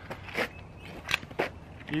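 Steel hooks of a two-handled log turner catching the bark of a small log, with a few short clicks and scrapes as the tool regrips and turns the log on asphalt.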